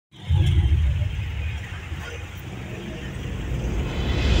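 A loud low rumble that eases off after about a second and builds again near the end.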